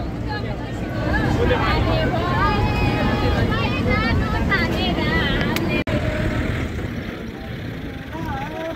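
Steady low rumble of a bus engine and road noise, heard from inside the moving bus, with people's voices over it, drawn out and wavering in pitch for most of the first six seconds.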